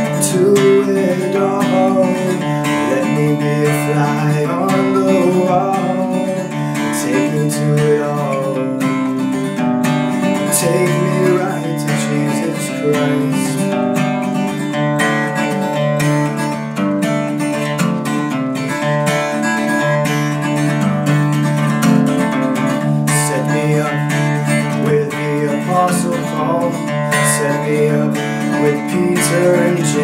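Steel-string acoustic guitar played steadily, picked and strummed through a chord progression.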